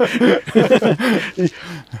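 Speech only: men's voices talking, with no other sound standing out.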